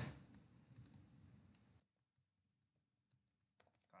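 Faint computer keyboard typing: a few scattered keystrokes in the first second and a half, a silent gap, then a few more keystrokes near the end.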